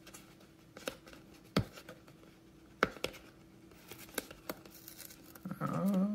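Fingers peeling a foil seal sticker off a cardboard trading-card box: a few scattered soft clicks and ticks, with a faint steady hum underneath.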